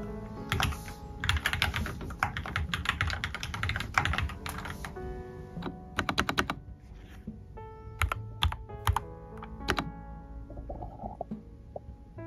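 Typing on a mechanical keyboard: a fast, dense run of keystrokes for the first few seconds, then a short burst and a handful of separate key presses, with background music underneath.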